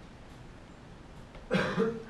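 Quiet room tone, then about one and a half seconds in a person gives a short, loud cough.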